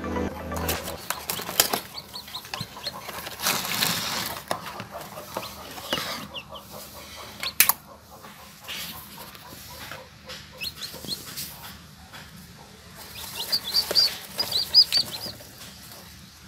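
Newly hatched chicks peeping: short, high cheeps in small groups, busiest near the end. Rustling and knocks come from a hand handling the chicks in the straw-lined box, with one sharp knock about halfway through.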